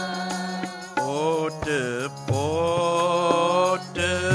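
Sikh kirtan: a voice singing a drawn-out melodic line without clear words over a sustained harmonium, with a few tabla strokes.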